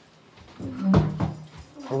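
A man's voice asking a short question in Danish.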